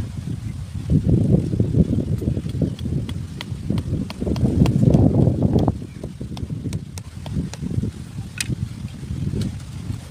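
Short-handled hoe blade scraping and chopping into dry, sandy soil in a dense, continuous rustle with many sharp little clicks of grit, loudest about five seconds in.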